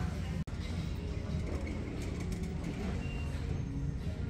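Shop background noise: a steady low rumble with faint music and distant voices, broken by a brief dropout about half a second in.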